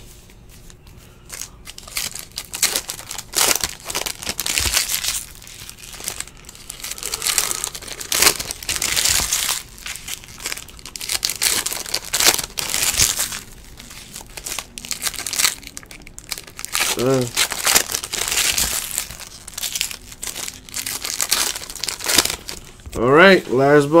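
Foil wrappers of 2017-18 Donruss basketball card packs being torn open and crinkled by hand, in repeated irregular bursts of rustling.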